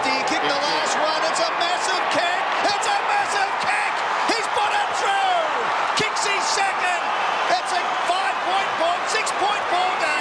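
Large stadium crowd cheering and shouting after a goal, many voices calling over one another, with scattered sharp knocks throughout.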